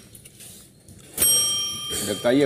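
A short lull, then about a second in a single bright bell-like ding whose several high ringing tones fade slowly.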